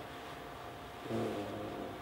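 Faint room tone, then a drawn-out, flat hesitation sound ("uhh") in a man's voice from about a second in until just before the end.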